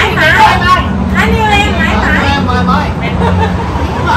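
Several people chatting and laughing together, with voices overlapping, over a steady low hum of street traffic.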